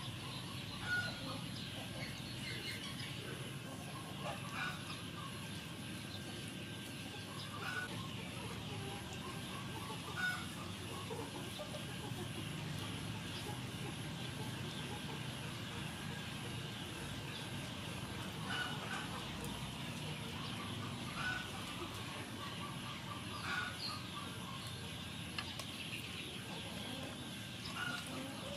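Chickens clucking now and then, short calls every few seconds, over a steady outdoor background hiss.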